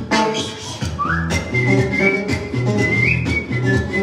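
A man whistling a melody over his own strummed acoustic guitar: the whistle comes in about a second in with an upward slide, then holds high notes, while the guitar keeps a steady strummed rhythm.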